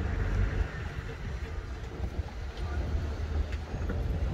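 A low, uneven rumble of outdoor background noise, with no distinct event standing out.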